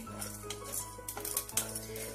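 Background music with sustained notes over light clicks and scrapes from whole spices being stirred with a wooden spatula as they dry-roast and crackle in a stainless steel pan.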